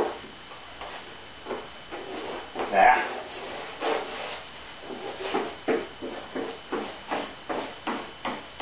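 Short, quick brush strokes of a small trimmed-bristle brush working wet epoxy into fiberglass tape on a wooden hull seam, the strokes coming about two or three a second in the second half.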